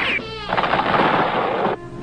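Cartoon machine-gun fire sound effect: a dense, rapid rattle lasting about a second, the squad's gunfire riddling the hollow log. It is preceded by a short falling whistle-like tone.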